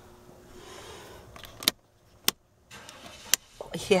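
Faint background hum, then three short sharp clicks spread over about a second and a half, with a moment of near silence between the first two.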